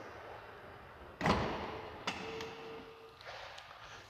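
A power liftgate closing on a 2018 Jaguar F-Pace: one thud as it shuts and latches about a second in, followed by faint clicks and a brief steady whine.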